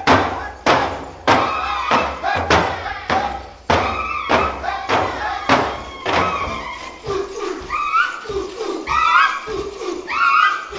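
Hand-held frame drums struck in a steady beat, a little under two strokes a second. About halfway through the strikes thin out and short rhythmic vocal calls from the dancers take over, bending in pitch.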